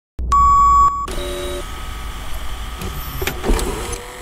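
Old-television and video-tape sound effect: a loud steady electronic beep that stops abruptly after under a second, then a low hum with static hiss, with a brief click near the end.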